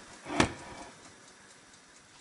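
A single short, sharp click about half a second in, then faint room tone.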